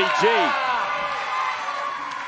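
A wrestling commentator's voice says a single word, then arena crowd noise fades down. No ring impact is heard.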